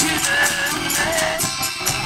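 A live rock band playing a song: a strummed acoustic guitar and an electric bass, a steady ticking percussion beat, and a voice singing a held, bending line.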